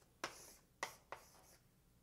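Faint writing: three short strokes in the first second and a half, as the partial derivatives are written out.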